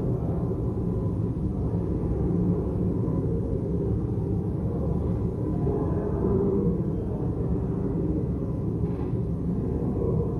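Low, steady murmur of a large hall full of people talking quietly and moving about, heard as a continuous rumble with no single voice standing out.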